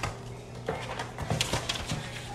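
Tissue paper rustling and crinkling as it is pulled out of a paper gift bag, a run of irregular crackles.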